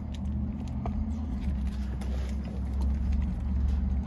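A steady low rumble of a car idling inside its cabin, with faint wet clicks of someone biting into and chewing a burger.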